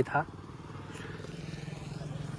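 A small engine running with a steady, rapid beat, growing gradually louder.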